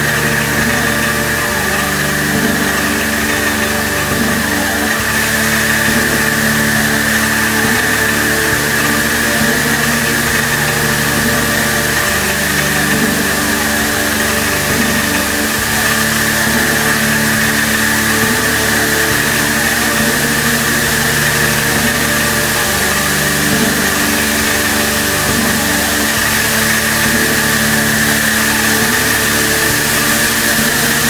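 A loud, steady drone of many held tones with a hiss above them, like engines running, unchanging throughout.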